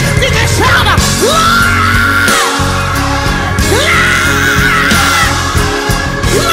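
Gospel song: the band plays on under a high voice that twice slides up into a long held shout.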